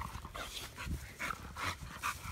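American bully dog panting quickly, a quick train of short breathy puffs, about three or four a second.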